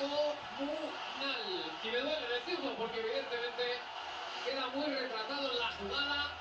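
Speech only: a television football commentator talking steadily in Spanish, quieter than a voice close to the microphone.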